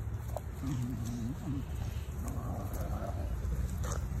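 English bulldog puppy vocalizing while rolling on her back: a wavering, whiny grumble about a second long starting about half a second in, followed by softer breathy snuffling.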